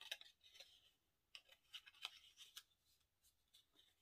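Faint rustling and scattered soft ticks of die-cut cardstock being folded and handled.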